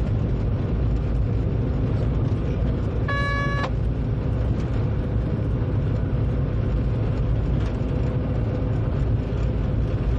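A train running steadily along the track, heard from the driver's cab as an even, low rumble. About three seconds in, a short tone sounds once for about half a second.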